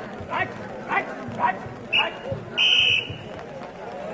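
A hadudu raider's chant repeated in a steady rhythm, about two syllables a second. A short whistle chirp follows about two seconds in, then a loud referee's whistle blast of about half a second near three seconds in.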